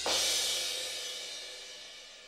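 A cymbal sample from the EZdrummer virtual drum kit, struck once right at the start and ringing out, its bright wash fading steadily.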